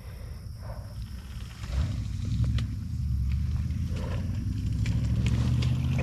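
SSR pit bike's small engine running steadily at low revs, coming in about two seconds in and growing a little louder, with a few light splashes or clicks from the bike in the water.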